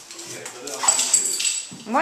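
A dog vocalizing with a pitched whine that lasts about a second and a half. The dog is begging for pizza.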